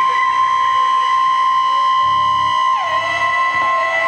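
Electronic noise music played live through effects pedals and a mixer: several steady high-pitched tones, one sliding down in pitch about three seconds in, over a low pulse that throbs on and off about once a second.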